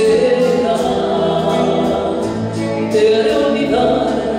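A woman singing a slow ballad in Spanish into a handheld microphone, holding long notes, over instrumental accompaniment.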